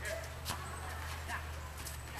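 A soccer ball is struck once on a hard tennis court, a single sharp thud about half a second in, amid distant players' voices.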